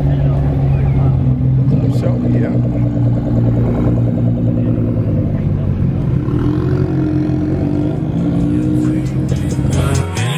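Car engines running at low speed as cars roll slowly past through a parking lot, a steady low drone that shifts a little in pitch. Voices can be heard in the background.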